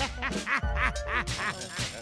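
Laughter in a quick run of short bursts over a hip hop beat with a deep, steady bass.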